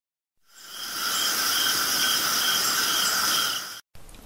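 Steady insect buzzing and trilling, with a chirp repeating about twice a second. It fades in after a moment of silence and cuts off abruptly just before the end.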